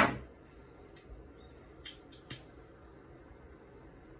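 A man coughs once, sharply, right at the start, followed by quiet with a couple of faint short clicks about two seconds in.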